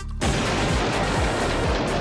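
Background music with a steady kick-drum beat. About a quarter-second in, a loud, dense hissing crackle sets in and holds: a fizzing sound effect for the mixed chemicals reacting.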